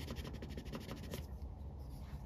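Isopropyl alcohol prep pad rubbing over a painted car body panel in quick, faint back-and-forth strokes, cleaning residue from around a freshly abraded paint chip; the rubbing stops a little over a second in.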